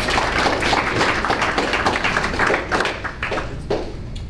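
A small audience in a meeting room applauding with dense, irregular clapping that thins out and stops near the end.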